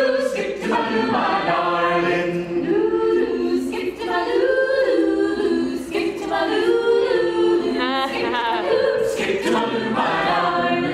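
A small mixed-voice a cappella ensemble of men and women singing in close harmony, with no instruments, in a large domed hall.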